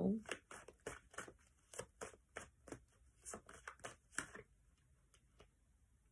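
A deck of tarot cards being shuffled by hand: a faint, quick run of card slaps, about four or five a second, that stops about four seconds in.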